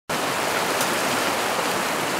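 A swollen river in flood, its fast, turbulent muddy water rushing steadily.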